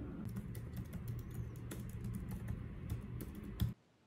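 Typing on a computer keyboard: irregular, quick key clicks over a low steady hum, cutting off abruptly just before the end.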